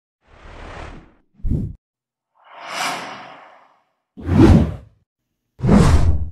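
A string of five whoosh transition sound effects with silence between them. The second is short and low, more of a thump, and the fourth and fifth are the loudest.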